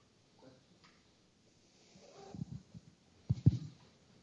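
A quiet room with faint, indistinct voices, then a few short dull thumps a little over three seconds in, two of them close together and the loudest sound here.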